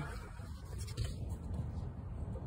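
Faint handling noise with a few light clicks, about half a second and a second in.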